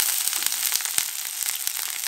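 Sliced onions sizzling in plenty of hot oil in a frying pan: a steady hiss with scattered crackles and pops as they begin to fry.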